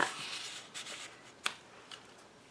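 Cardstock picture mat sliding and rustling against the paper pages of a handmade mini album, with a single sharp tap about a second and a half in.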